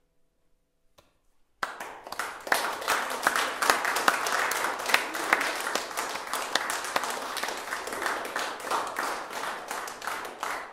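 Audience applause at the end of a piece: after about a second and a half of near silence, many people start clapping all at once and keep clapping steadily.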